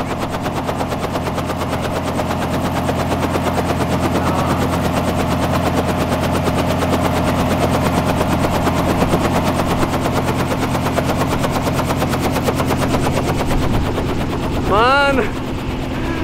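Small helicopter running on the ground, its main rotor turning with a rapid, steady blade chop over the steady hum of the engine.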